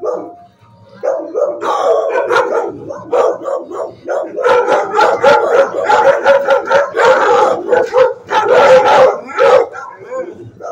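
Shelter dogs barking and howling in a kennel block. The barks start about a second in and keep coming thick and fast, overlapping, until just before the end.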